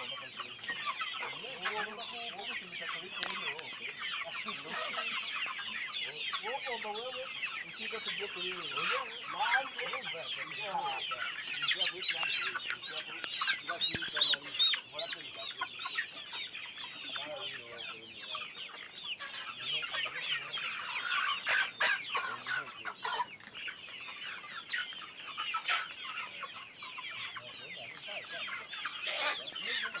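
A large flock of chickens clucking and calling all at once, a dense, continuous chatter of many overlapping short calls.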